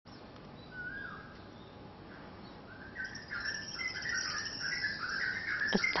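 Several birds singing at daybreak: a single slurred whistle about a second in, then dense chirping and twittering from about three seconds on.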